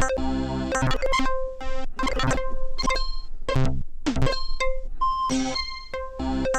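Synthstrom Deluge groovebox playing an electronic loop: short synth notes and chords in an even rhythm, punctuated by sharp drum-like hits.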